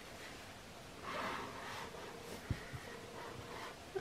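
Quiet desk handling: a soft breath out about a second in, then a single faint knock around the middle.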